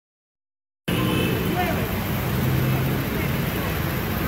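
Street traffic noise, vehicle engines running with faint voices mixed in, starting abruptly about a second in after silence.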